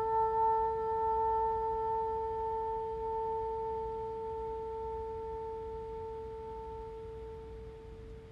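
Bassoon holding one long, steady note that slowly fades away in a gradual diminuendo.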